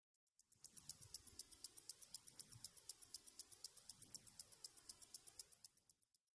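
A mechanical watch ticking fast and evenly, about eight ticks a second, fading in and then fading out.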